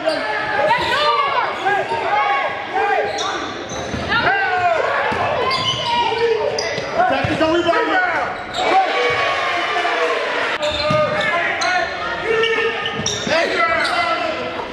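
Live game sound in a school gym: a basketball dribbling and bouncing on the hardwood court among players' and spectators' voices, with scattered short impacts.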